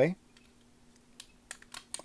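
A few light plastic clicks in the last second as fingers pry at a Transformers deluxe toy car's tabbed-shut plastic windshield to pop it open.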